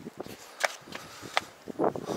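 Two light, sharp clicks about three-quarters of a second apart, followed near the end by a short burst of a voice.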